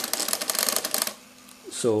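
Canon X-710 colour pen plotter (ALPS mechanism) plotting: a rapid, even ticking of its stepper drive as the paper rolls up and down under the pen carriage, stopping abruptly about a second in.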